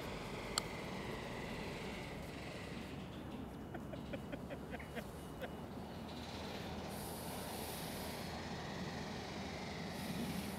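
Quiet outdoor background with one sharp click about half a second in: a golf ball struck on a putt with a TaylorMade P790 UDI 17-degree driving iron. A few fainter ticks follow.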